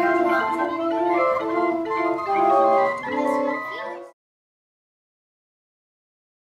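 Orgelkids wooden pipe organ sounding several held notes at once, notes starting and stopping in a jumble as many keys are pressed together. The sound cuts off suddenly about four seconds in.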